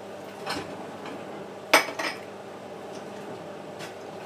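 Metal kitchen utensils clinking against pots and dishes while pasta is plated. There are four short clinks, the loudest a little before halfway, over a steady low hum.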